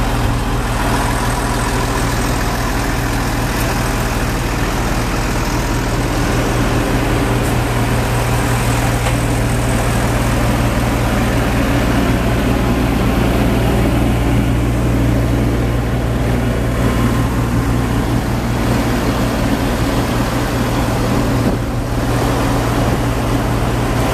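An engine idling steadily, an even low hum that does not change.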